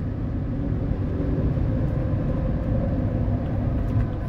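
Steady road and engine noise inside a vehicle's cabin while cruising on a highway at about 56 mph, with a faint steady hum running under it.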